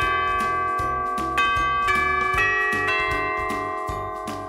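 Honeywell Home wireless doorbell chime unit playing one of its selectable melodies after its Melody button is pressed: a tune of bell-like notes that ring on over one another, with new notes struck about every half second after a pause, the sound slowly fading toward the end.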